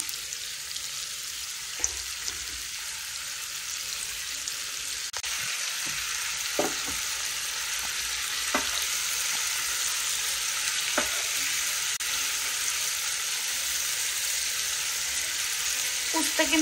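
Sliced bitter gourd and julienned vegetables frying in oil in a nonstick pan: a steady sizzle that gets a little louder about a third of the way in. A wooden spatula stirs through them, scraping the pan a few times.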